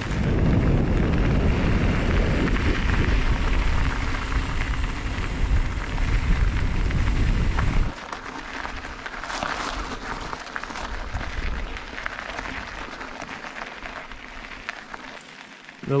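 Mountain bike riding on a gravel track: a loud rumble of wind on the microphone and tyres on gravel, which drops suddenly about eight seconds in to a quieter hiss of tyres rolling on the gravel.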